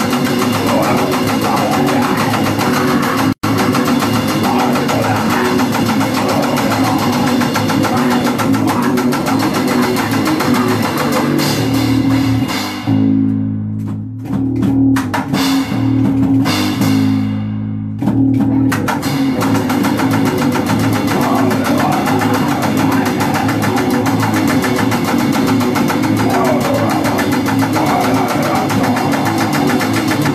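Grind/crust band playing live and loud: distorted bass and electric guitar over fast drums. About twelve seconds in, the band drops to a sparse low riff with a few hits for about five seconds, then the full band comes back in. There is a split-second gap in the audio about three seconds in.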